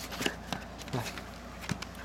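Faint rustling and a few light taps as a cardboard LaserDisc jacket is handled, turned over and laid down on carpet.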